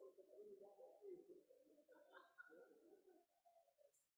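Faint, muffled murmur of several people talking at once in a room, fading out about three seconds in.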